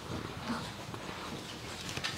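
Low room tone in a large hall, with faint, indistinct rustles.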